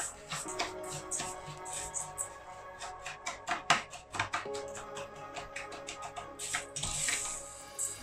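Background music over a plastic spatula stirring dry rice in a stainless steel saucepan: many short scraping, rattling strokes as the grains are toasted before the water goes in.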